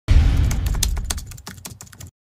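Logo-intro sound effect: a low boom that starts suddenly and fades away, under a rapid, irregular clatter of computer-keyboard typing clicks.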